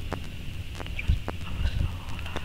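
Irregular light knocks and clicks on a hard surface, with a dull thump about a second in and another near the end.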